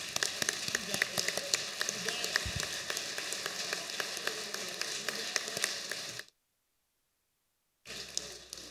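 Applause from a room full of people: many overlapping hand claps that stop abruptly about six seconds in.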